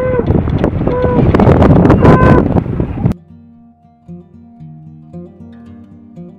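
Loud outdoor noise with wind and a few short, pitched calls. About three seconds in it cuts abruptly to soft plucked acoustic guitar music.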